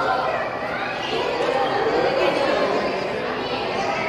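Indistinct chatter of several people talking at once, with no one voice standing out.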